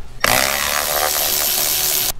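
Cordless electric ratchet running, spinning the 11 mm nut off one of the bolts that hold a toilet to the floor. The motor whirs steadily, starting about a quarter second in and cutting off suddenly at the end.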